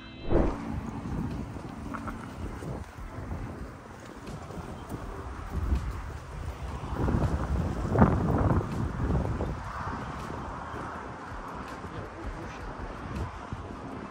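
Wind buffeting the microphone in uneven gusts, a low rushing rumble that swells loudest about seven to nine seconds in.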